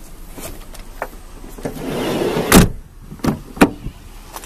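The sliding side door of a 2000 Chevrolet Venture minivan rolling along its track for about a second and shutting with a heavy thump about two and a half seconds in. A couple of sharp knocks from the door hardware follow.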